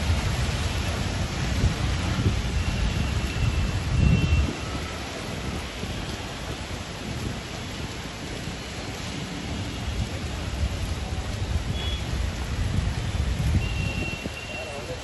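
Heavy rain falling on a wet road, a steady hiss. Under it runs a low rumble that swells about four seconds in and again near the end.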